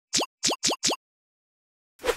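Four quick rising 'bloop' pop sound effects in under a second, one for each of four quiz answer options popping onto the screen.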